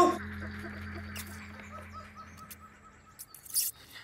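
Music fading out, then a faint bird twittering in a quick run of short, evenly spaced chirps, about five a second. A short hissing rustle near the end is the loudest moment after the music.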